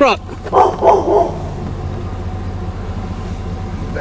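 A large dog barking three times in quick succession about half a second in, over the steady low hum of the pickup truck's engine.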